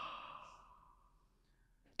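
A person's soft breathy exhale, like a sigh, fading out within the first half second, then near silence.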